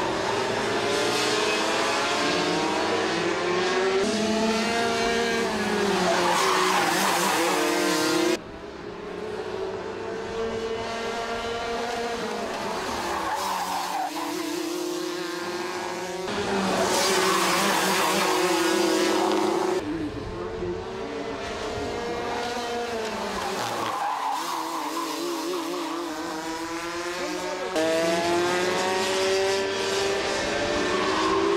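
Several two-stroke racing kart engines revving high, their pitch rising and falling as they brake and accelerate through corners and pass. The sound changes abruptly every few seconds.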